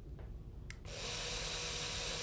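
A click, then about a second in a Rinntech resistance microdrill starts running, giving a steady hiss with a faint low hum as it begins to drill into a timber piling.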